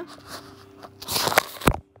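Handling noise of a phone being covered and moved about: rustling about a second in, then two sharp knocks near the end.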